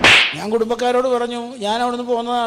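Comic slap sound effect: one sharp crack right at the start. A man's voice follows with long, drawn-out notes.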